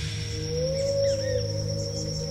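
Atmospheric background music: a low sustained drone with a slow tone that rises and falls in pitch, over a steady thin high whine.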